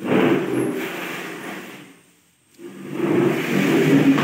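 Plastic chair dragged across a marble floor, its legs scraping in two long pushes of about two seconds each.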